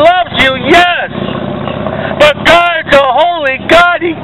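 A man preaching in a loud, shouting voice that distorts. About a second in, his voice breaks off for about a second and steady street traffic noise fills the gap.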